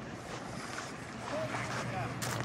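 Steady wind on the microphone with the wash of calm water along the shore, with faint distant voices.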